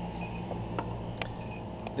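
A steady low hum in a small room, with a few faint clicks and ticks through it.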